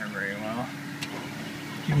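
A man's voice murmuring softly and briefly, then trailing off into a faint, low held tone.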